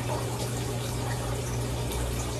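Steady low hum under an even hiss: constant room background noise with nothing else standing out.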